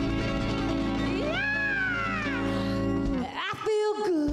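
A soul/R&B dance band playing. About a second in, a high lead line swoops up and falls away. Near the end the band drops out for a moment under a single note that slides up and is held.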